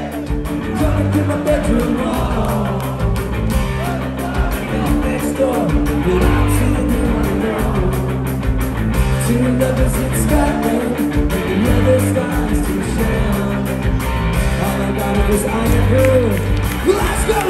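Ska-punk band playing live: electric guitar, bass guitar and drum kit with a voice singing over them, heard through a phone's microphone in a hall.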